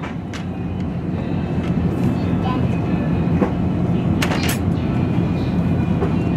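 Steady low rumble of supermarket background noise in front of a refrigerated dairy case, with light knocks of items being handled in a plastic shopping basket and a short sharp sound about four seconds in.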